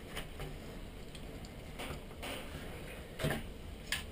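A few faint clicks and knocks of the plastic transmitter case and its internal plug being handled as a cable is unplugged and the case is lifted apart. The loudest knock comes a little after three seconds in.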